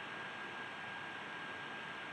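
Steady hiss of a recording's noise floor, with a thin steady high whine running under it.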